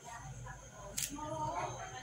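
A low hum and a single sharp click about a second in, with a faint voice in the second half.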